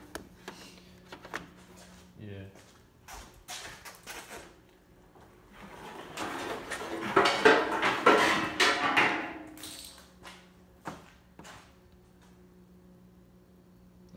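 Scattered light clicks and clinks of a spark plug, test-light wire and tools being handled over an open engine. A louder stretch of muffled voice and rubbing comes about six to nine seconds in, over a faint steady hum.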